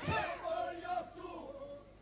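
Albanian Lab-style polyphonic group singing. A new phrase opens with a loud call that slides down in pitch, then several voices hold notes together and fade out near the end.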